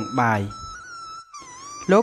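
Spoken narration over soft background music: a voice speaks briefly, then pauses while long held notes of the music carry on, and speaking starts again near the end.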